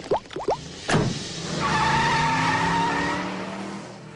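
Cartoon sound effects: a few quick rising squeaks, a sharp pop about a second in, then a long zooming sound with several steady tones, like a car speeding off, fading near the end.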